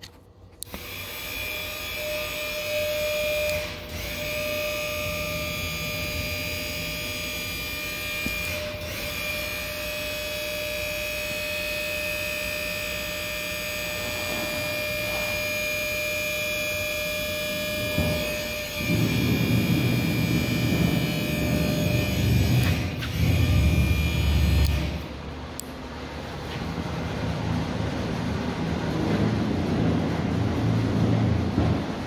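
The electric motor of a trailer's hydraulic dump pump runs steadily with a whine while raising the dump box. About two-thirds of the way through the sound turns deeper and louder, and near the end the high whine stops while a lower rumble carries on.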